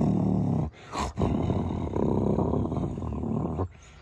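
A man imitating a stag's rutting roar with his own voice: two long, deep roars with a short break about a second in.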